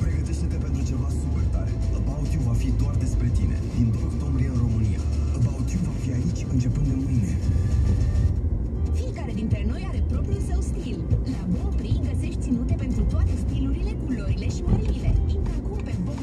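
Car radio playing music with a voice, heard inside the cabin over the steady low rumble of the car's engine and tyres.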